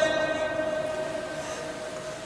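Echo of an amplified male voice dying away through a public-address system, leaving a single steady ringing tone that slowly fades.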